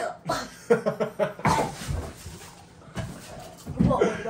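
A boy gagging and coughing from the burn of an extremely hot chip, close to throwing up. There is a run of short strained sounds, then a long breath, then a loud cough near the end.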